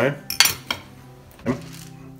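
Metal fork and knife clinking against a ceramic plate as they are laid down: a few sharp clinks, the loudest about half a second in.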